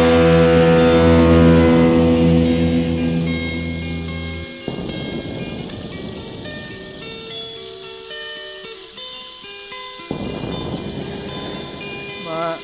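Electric guitar and band ending a song: a full chord with bass rings out and stops suddenly about four and a half seconds in, then a few sparse held notes sound and fade.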